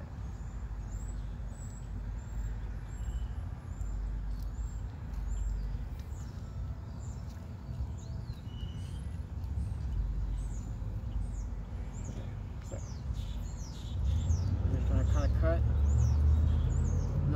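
Small birds chirping over and over in quick, high, falling chirps above a steady low rumble, which grows louder near the end.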